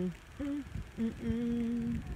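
A person humming a slow tune in a few long held notes, the last held for about a second.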